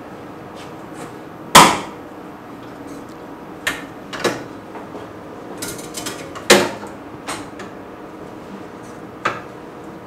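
About six sharp knocks and clacks as a TLC plate is set onto the plate holder of a CAMAG Automatic TLC Sampler 4 and the instrument is handled; the loudest comes about one and a half seconds in and another just past the middle.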